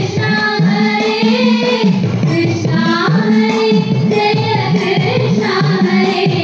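Female singing of a Thiruvathirakali dance song, a continuous melody of held, wavering notes.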